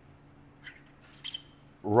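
Felt-tip marker writing on cardboard: two faint, short squeaks of the tip about halfway through, over a low steady hum.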